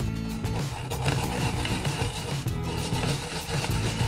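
Daikon radish being grated on a flat stainless-steel grater: a steady scraping. Background guitar music plays throughout.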